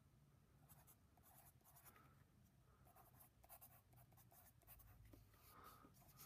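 Faint scratching of a pencil writing on a paper worksheet, in short runs of strokes with brief pauses between them.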